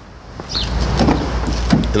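Rear door of a 2016 Honda Civic being pulled open by its handle, the latch releasing with a small knock. A low rumble of noise on the microphone runs under it from about half a second in.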